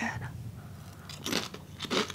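Chewing on a mouthful of Takis Crisps, with a few crunches of the crisp chip, one about a second and a half in and another near the end.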